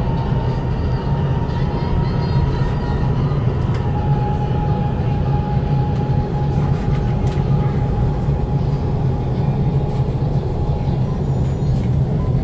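Electric light-rail train heard from inside the car as it slows along a station platform: a steady low rumble with a faint high whine that drops slightly in pitch about four seconds in.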